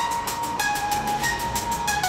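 Instrumental synthwave: a synthesizer plays a slow melody of long held notes, stepping in pitch every half second or so, with no drums.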